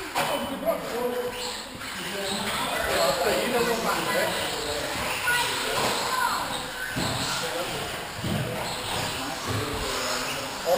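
Indistinct voices of people talking in a large, echoing hall, with a few short knocks.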